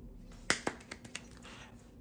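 Finger snapping: a sharp snap about half a second in, a second soon after, then a few fainter clicks.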